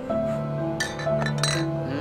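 Glass beer bottles clinking together a few times in a toast, about a second in, over sustained background music.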